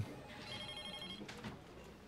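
A faint, short electronic ringing tone, several high steady pitches together, lasting under a second.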